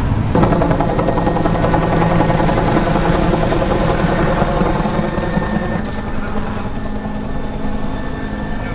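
A helicopter flies overhead, its rotor beating in a steady chop, growing a little fainter in the second half.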